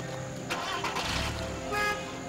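Car engine being started about half a second in, cranking and then running with a low rumble, over background film music.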